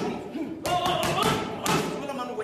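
Boxing gloves smacking into focus mitts in a quick combination, several sharp hits with the hardest at the start, about two-thirds of a second in and near the end, over music with a voice.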